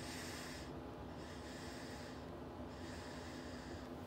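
A tobacco pipe being puffed: three soft, breathy draws and puffs of air through the pipe, each just under a second long, with short gaps between them.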